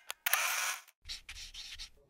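A short edited sound effect with an animated graphic: a sharp click, then a scratchy burst of noise lasting about half a second, then a fainter rustle until just before the end.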